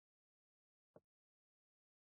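Near silence: a pause in an online lecture's audio, broken only by one very short, faint blip about a second in.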